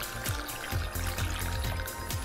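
Melon liqueur pouring in a thin stream from a bottle's metal pour spout into a glass pitcher of punch, under background music with a steady beat.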